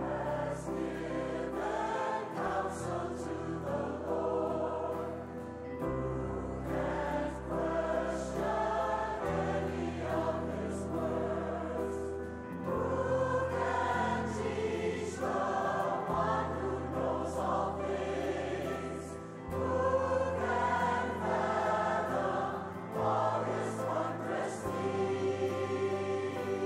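Large church choir singing a hymn in harmony over instrumental accompaniment, with held low bass notes that change every few seconds.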